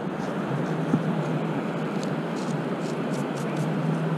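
Steady rushing noise of wind and surf on an open beach, with a faint steady low hum underneath and a few light scratchy ticks in the second half.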